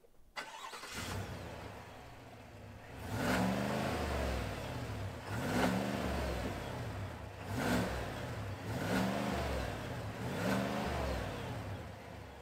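2022 Chevrolet Silverado High Country's naturally aspirated 6.2-litre V8 starting, then idling and revved about five times, each rev rising and falling in pitch. It is heard from behind the truck at the exhaust tips.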